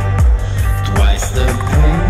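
Music: a full band track with a steady drum beat, about two beats a second, under sustained instrument chords.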